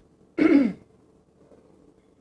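A man clearing his throat once, about half a second in: a short voiced sound that falls in pitch.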